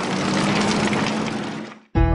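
Land Rover Discovery Series II driving through mud: a steady engine drone under the noise of the tyres churning through the mud. It fades out and stops just before the end.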